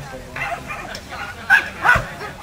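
Mudi puppy yapping: two short, high yaps close together near the end.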